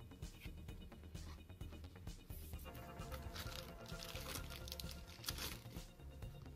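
Faint background music with light rustling and clicking of trading cards and clear plastic card sleeves being handled.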